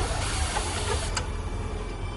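Gas hissing out of a thin nozzle for about a second, over a steady low mechanical hum. A sharp click comes at the start, and another as the hiss stops.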